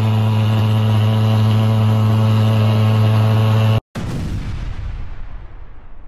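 Thermal fogging machine spraying insecticide, running with a loud, steady, low buzzing drone. Just under four seconds in, the drone cuts off abruptly and a booming sound effect follows, fading away.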